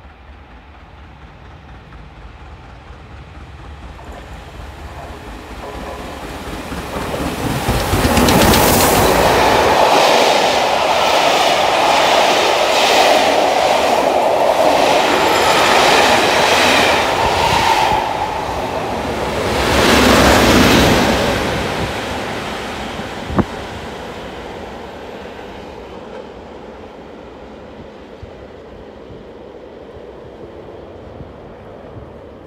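An LMS Black Five steam locomotive and its train of coaches running through a station at speed: the sound builds as it approaches, is loudest from about eight seconds in while the engine and coaches rattle past over the rail joints, swells once more about twenty seconds in, then fades away. A single sharp click about twenty-three seconds in.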